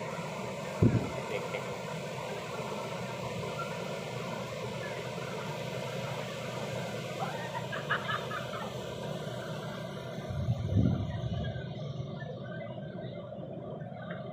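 Small waves breaking and washing up a sandy beach, a steady rushing surf. Two low thumps come through, about a second in and again near eleven seconds.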